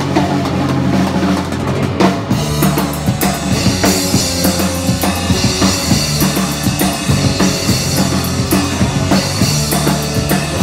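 Live instrumental surf-punk band playing at full volume: electric guitars and bass guitar over a driving drum kit. The drums are loudest, heard from beside the kit on stage.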